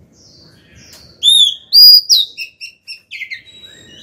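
Female Oriental magpie-robin singing in its cage: two loud clear whistles a little over a second in, then a quick run of short chirps and a few slurred notes. This is the female's song calling for a male.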